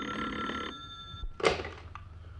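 Telephone bell ringing. It stops just under a second in and its ring dies away. About a second and a half in there is a single thunk as the receiver is picked up.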